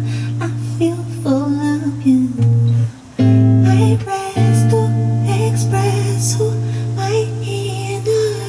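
Live song performance: electric guitar holding sustained chords under a singer's voice, with a brief drop in level about three seconds in.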